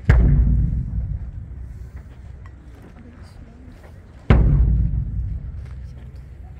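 Two deep booms from a large ceremonial drum, struck about four seconds apart, each ringing down over a second or so. It is the drum signal that announces the change of duty between guard commanders.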